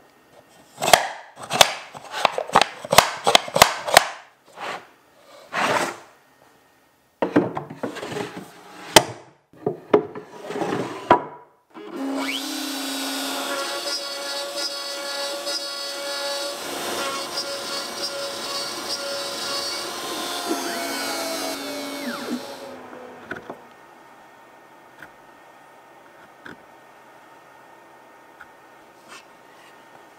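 Plywood pieces being handled and fitted together, with a run of sharp wooden knocks and clicks for the first ten seconds or so. Then a CNC router spindle runs, cutting a plywood panel, for about ten seconds. Its pitch falls as it winds down near the end.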